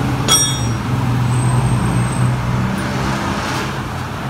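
A steady low motor hum, like a vehicle engine running nearby, with a sharp click about a third of a second in.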